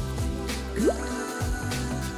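Background music with a single cartoon water-drip sound effect, a short quickly rising 'bloop', a little under a second in.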